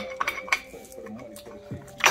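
Light metallic clicks and clinks from a failed brake caliper and its pads as it is worked by hand, with a few sharp clicks in the first half second.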